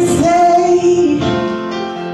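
Worship song: a woman singing a long held note over sustained instrumental backing, the note ending just past the middle.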